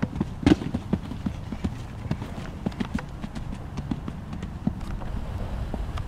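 Hoofbeats of a horse cantering on arena sand as it jumps a small cross-rail fence, with the heaviest thud about half a second in, then irregular hoof strikes as it canters on.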